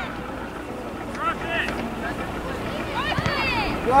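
Distant voices shouting on a soccer field: two short calls about a second in and a longer one near the end, over a low wind rumble on the microphone.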